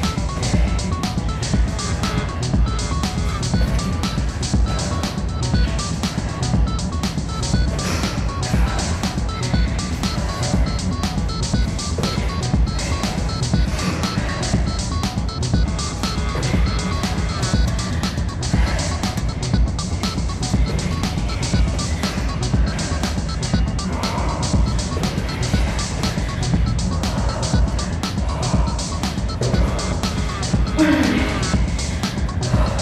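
Background music with a fast, steady beat.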